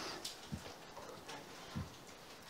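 Quiet pause between a man's sentences at a desk microphone: faint room tone, the tail of a breath at the start, and two soft clicks, one about half a second in and one near the end.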